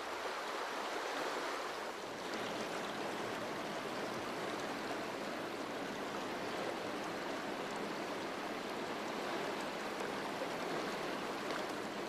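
River water rushing: a steady, even hiss.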